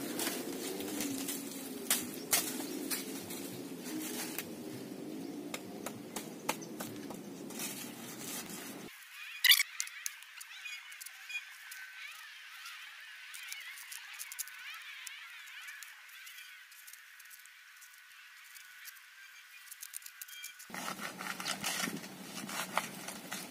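A knife cutting into a banana plant's soft trunk, heard as a few sharp clicks and snicks over a faint, wavering outdoor background. Partway through, the low part of the sound drops away and only a thin, faint high hiss remains.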